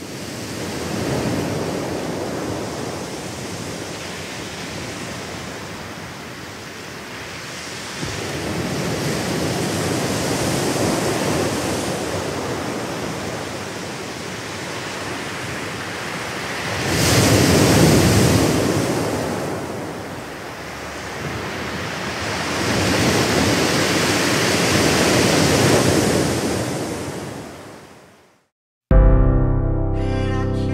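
Ocean surf: waves breaking and washing ashore in slow swells several seconds apart, the loudest about two-thirds of the way through. It fades in at the start and fades out at the end.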